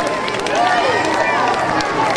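Crowd chatter: many voices talking at once, with scattered light clicks and taps.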